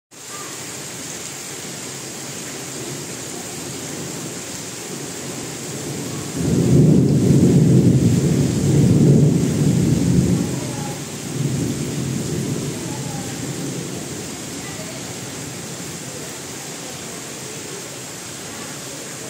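Heavy rain falling steadily with a constant hiss. About six seconds in, a deep rumble of thunder swells up and lasts about four seconds, followed by a weaker rumble that fades away.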